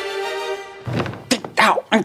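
Soft background music holds a steady chord, then a man's voice grunts and mutters in frustration from about a second in, with a short thunk among the grunts.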